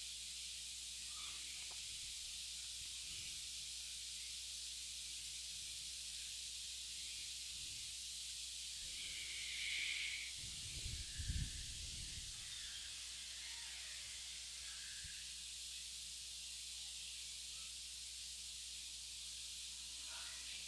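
Steady background hiss of a phone microphone recording, with no speech. A faint rustle comes about ten seconds in, followed by a couple of soft low thumps.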